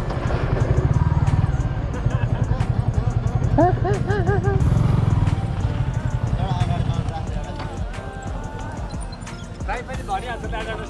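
Motorcycle engine running at low speed as the bike slows and pulls up, a fast pulsing beat that fades out about seven seconds in. A wavering voice is heard briefly around four seconds in.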